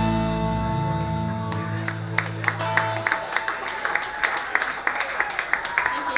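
A rock band's final chord, with electric guitars, rings out and fades away over the first three seconds. Audience clapping starts about a second and a half in and carries on.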